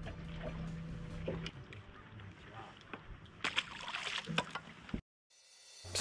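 Faint sounds aboard a small fishing boat on the water: a low steady hum for the first second and a half, scattered light clicks and knocks, and a few faint voices. The sound cuts out completely near the end.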